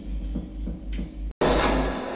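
Live experimental electronic music: a low droning hum with soft pulses, broken by a split-second dropout about a second and a half in, after which a louder, denser noisy texture sets in.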